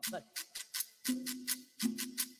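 A live band starting a song: a quick, even percussion pattern of about five light strokes a second, joined about a second in by two held low notes.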